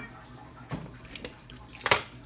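Metal hardware of a nylon dog leash and collar (snap hook and rings) clinking as it is handled: a few light clicks, then a louder jingle of metal near the end.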